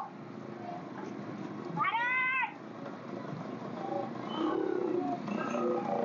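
A cat meowing once, a single drawn-out meow about two seconds in that rises and then falls in pitch.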